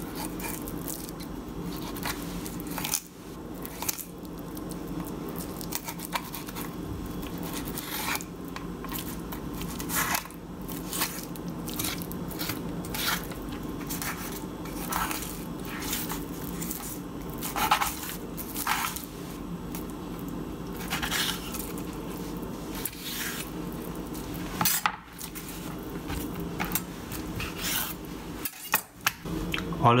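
A long thin kitchen knife drawn in long strokes along a branzino's backbone, making a scattered series of short scraping clicks as the blade runs over the bones and touches the plastic cutting board. A steady low hum sits underneath.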